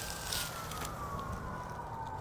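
An emergency-vehicle siren wailing, one long tone falling slowly in pitch.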